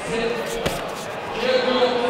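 A single sharp smack about two-thirds of a second in, a kickboxing strike landing with gloves or a kick on padding, over voices shouting in a large hall.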